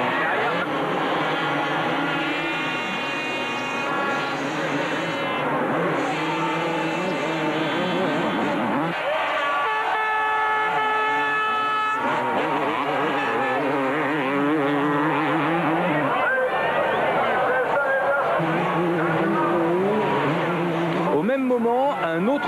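250cc two-stroke motocross bikes racing, engines revving up and down as the riders accelerate, jump and corner.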